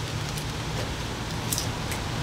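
Plastic bag and protective film rustling steadily as a wrapped taillight is handled and lifted.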